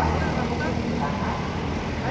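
Coach bus engine idling close by with a steady low hum, with faint voices over it.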